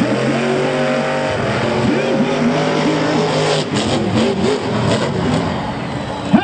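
Monster truck's supercharged V8 engine running hard around the dirt track, a steady drone that climbs a little in pitch for about three and a half seconds, then turns rougher and noisier.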